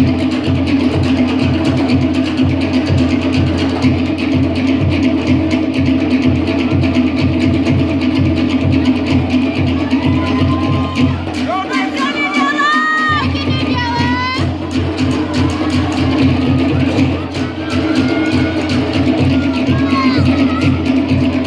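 Live Tahitian drum ensemble playing a fast, driving rhythm for ori Tahiti dancing. About halfway through, the deep drum drops out for a moment while high, gliding whoops and shouts rise over the drumming.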